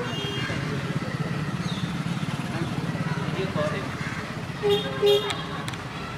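Street traffic: an engine runs nearby with a steady low hum, and about five seconds in a vehicle horn sounds twice in quick succession, the second toot louder, over background voices.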